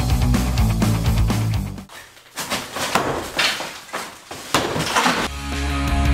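Rock music with heavy guitar drops out for about three seconds in the middle. In that gap, several crashes and cracks of a plaster-and-lath wall with brick behind it being smashed out can be heard, and then the music comes back.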